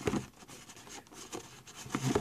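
Light handling noise from a hand shifting a cardboard tablet box on a wooden desk: faint scattered rubs and a few soft ticks.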